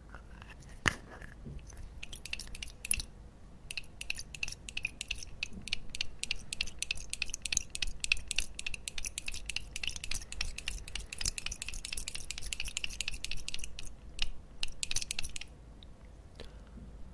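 Small cosmetic packaging handled right at the microphone: a sharp click about a second in. From about two seconds in comes dense, rapid crackling and tapping that stops shortly before the end.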